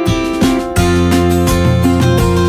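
Background music: a strummed acoustic guitar with a steady beat, fuller and louder from just under a second in.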